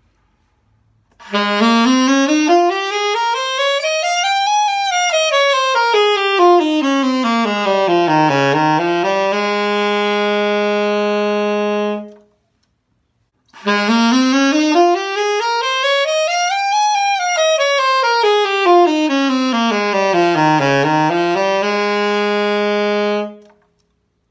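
Alto saxophone playing the F major scale over its full range: up from F to the top of the horn, down to the lowest B-flat, back up to F and holding it as a long note. The run is played twice, with a short silence between.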